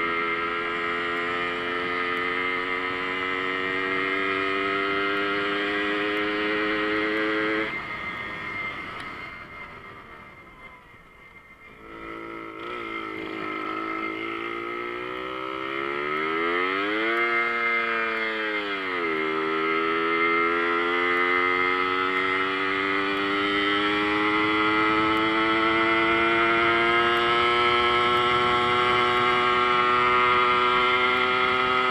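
Jawa Babetta moped's 50 cc two-stroke engine running under way with a high buzzing note that climbs slowly. About eight seconds in, the throttle closes and the note falls away to a faint idle while the moped coasts. It then revs back up, with a brief rise and fall a few seconds later, before settling into a steady, slowly climbing drone again.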